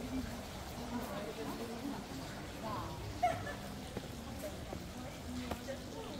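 Indistinct voices of several people chatting at a distance, with a few faint clicks.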